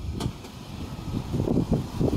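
Wind buffeting the microphone in uneven low gusts, with one brief click shortly after the start.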